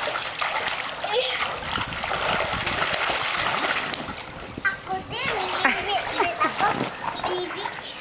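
Water splashing in a small inflatable paddling pool as children move about in it, densest in the first half. From about halfway, high children's voices and squeals come in over the splashing.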